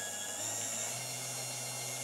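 Small 24-volt brushed motor of an Allen Bradley rotating warning beacon running and speeding up, its low hum stepping up in pitch about half a second in and again near one second. Its optical speed sensor is blocked, so the controller has no speed feedback and drives the motor faster.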